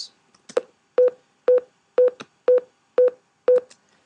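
Final Cut Pro's unrendered-playback warning beep: a short mid-pitched beep repeating evenly about twice a second, seven times. It is the sign that the clip's audio does not match the sequence settings and has not been rendered.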